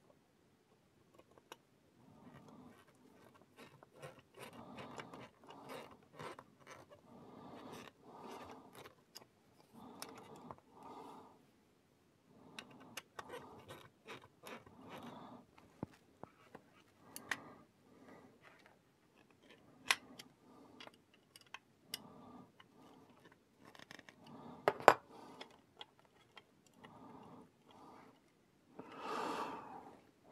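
Plastic model-kit parts being handled and fitted by hand: soft rubbing and scraping with many light clicks and taps, a few of them sharper.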